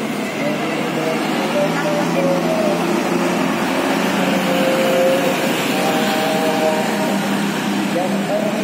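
A high-deck coach bus driving past, its engine and tyre rumble mixed with motorcycle traffic. Voices are heard over the traffic.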